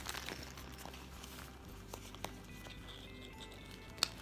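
Quiet handling of a deflated vinyl float ring in a clear plastic zip bag: faint crinkling with a few light clicks.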